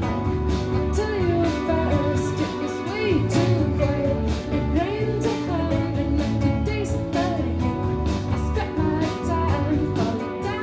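A live rock band plays at a steady beat: two electric guitars, drums with regular cymbal hits, and a woman singing.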